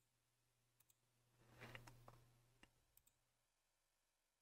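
Near silence with a faint low hum and a few soft computer mouse clicks, a pair about a second in and more around the two-and-a-half to three-second mark.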